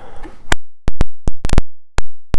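Mini air palm nailer hammering in short bursts: about eight sharp, loud cracks at irregular spacing, some close together, with dead silence between them.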